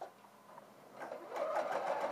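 Electric domestic sewing machine starting up about a second in and running steadily with rapid, even needle strokes, sewing a row of long gathering stitches. The first second is quiet apart from a small click.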